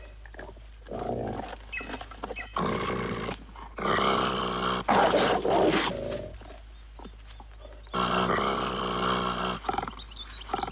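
Wolves growling and snarling over a kill, in several long, gravelly bouts through the first six seconds, then again about eight seconds in after a short lull.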